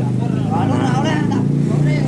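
An engine running steadily at idle, a low even drone, with people talking over it.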